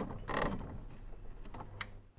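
Mechanical creaking and irregular clicking over a low steady hum, with a creak about half a second in and a sharp click near the end.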